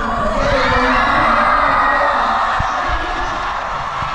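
Large concert crowd cheering loudly, with irregular low thumps underneath.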